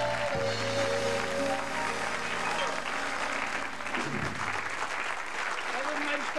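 A studio audience applauding over a short musical interlude of held chords; the music fades after about two seconds while the applause goes on, and a voice comes in near the end.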